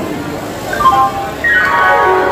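Railway station public-address chime: a short melody of clean electronic tones that begins just under a second in and builds into a held chord, the jingle that comes before a train announcement. Platform crowd chatter runs underneath.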